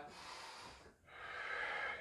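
A man breathing forcefully in time with a breath-led exercise: two breaths of about a second each, with a brief pause between.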